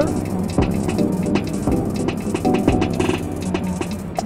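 Electronic beat of drums and held synth tones from an Elektron Model:Samples groovebox, its tracks running at different multiples of the tempo.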